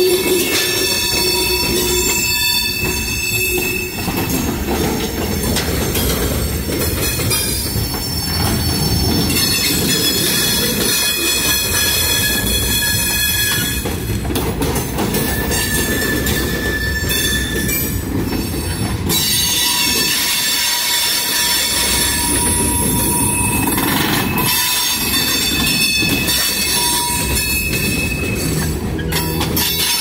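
Freight cars of a mixed manifest train rolling past close by, the wheel flanges squealing against the rails in high, steady tones that come and go in several long stretches, over the low rumble of the wheels.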